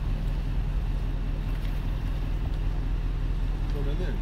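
Steady low engine hum with a noisy rumble over it.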